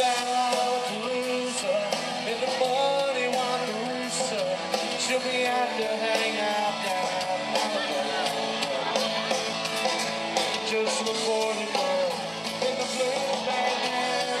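Live band playing an amplified rock song.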